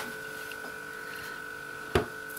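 Quiet, steady electrical hum with a thin high whine, and one sharp knock just before the end.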